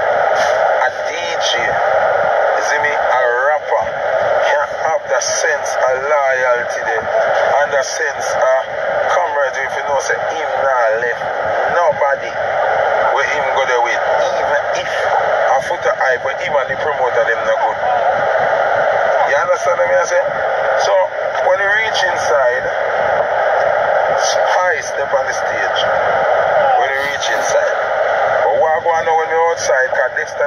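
A man talking without pause, his voice thin and tinny, with almost no low end.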